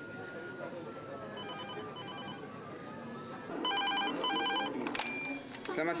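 Telephone ringing in double rings: a faint double ring about a second and a half in, then a louder double ring from about three and a half to five seconds, followed by a sharp click. Faint voices murmur underneath.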